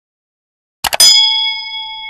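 Subscribe-button animation sound effect: a few quick mouse clicks about a second in, then a bright bell ding that rings for about a second.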